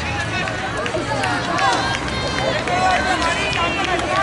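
Several voices calling out at once, indistinct and overlapping: players and sideline spectators around a youth football pitch while a free kick is being set up.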